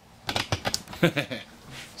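A rapid run of light clicks and taps, then a man's short laugh.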